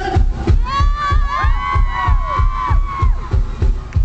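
Live pop-punk band resuming after a pause, with electric guitar over a fast, even kick-drum beat of about four thumps a second. The crowd is screaming and cheering loudly over it.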